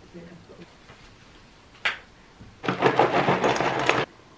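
A single sharp click, then Weetabix Crispy Minis cereal pieces pouring from the box into a bowl: a loud, dense rattle for just over a second that cuts off suddenly.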